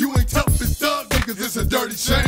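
Hip-hop track: a man rapping over a drum beat.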